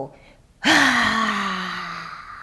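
A woman's long, voiced sigh out through the mouth, a deliberate exhale to release the breath, starting about half a second in and slowly falling in pitch as it fades.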